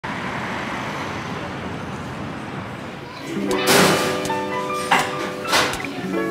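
Steady city street traffic noise for about three seconds, then background music with guitar fades in. Three short sweeping swishes cross the music.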